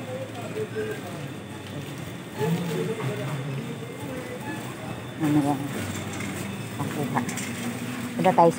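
Indistinct talking in short stretches, with no clear words.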